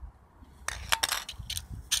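A steel spray-paint can's rim scraping and clinking on sandpaper as it is rubbed in short quick strokes, starting about two-thirds of a second in: grinding through the can to take its base off.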